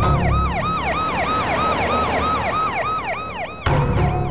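Electronic emergency-vehicle siren in a fast yelp, each note rising and falling about four times a second, over a low rumble that jumps louder near the end.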